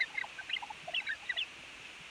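A monkey's chatter imitated on an early acoustic Edison record: many quick, faint, high squeaks and chirps, the organ-grinder's monkey answering the call to speak. Steady record surface hiss runs underneath.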